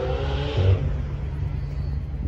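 A car engine running with a slowly rising pitch that fades out under a second in, over a steady low rumble.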